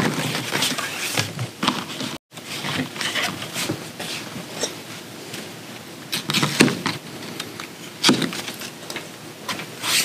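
Leather strips being handled and cut to length on a wooden workbench: scattered scrapes, rustles and light knocks as the lining leather is moved about and a knife slices through it.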